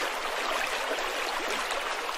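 Otohime toilet sound masker playing its recorded sound of flowing water, a steady rushing hiss meant to cover the sounds of someone using the toilet.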